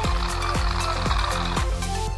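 Background music with a steady beat of about two beats a second over a bass line; it stops at the very end.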